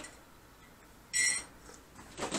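A single short, high-pitched ding about a second in, against quiet room tone.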